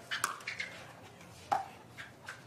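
Pickleball paddles striking the hollow plastic ball in a fast exchange at the net: a quick run of sharp pops, then another pop about a second and a half in.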